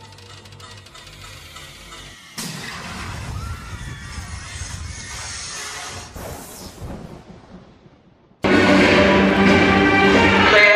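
Rushing noise with faint cries from the Tower of Terror drop ride for several seconds, fading out. Loud music cuts in suddenly about eight seconds in.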